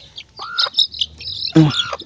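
Chicks peeping in short, high chirps that fall in pitch while being handled. A lower arched call comes about half a second in, and a louder squawk with a lower voice comes near the end, from the hen.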